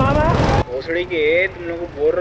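Rental go-kart's small engine running, with rushing noise on the kart-mounted camera and a man's voice over it, cutting off abruptly a little over half a second in. After that, a man talks over a quiet background.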